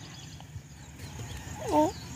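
Quiet outdoor background with one short, pitched call that dips and then rises in pitch, near the end.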